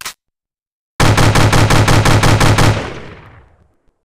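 Sound effect of an automatic rifle firing one burst of about a dozen rapid shots, about seven a second, starting a second in, with the echo fading away over the following second. A short click comes right at the start.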